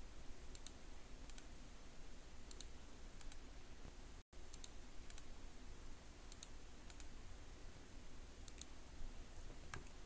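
Faint, scattered computer mouse clicks, about ten of them a second or so apart, over a low steady room hum. The clicks come as new terminal tabs are opened through a right-click menu. The sound cuts out completely for an instant a little after four seconds.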